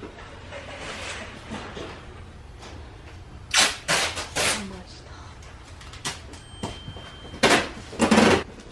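Indoor shop ambience with a steady low hum and faint background voices, broken by a quick series of sharp knocks or clatters about three and a half to four and a half seconds in and one more near the end.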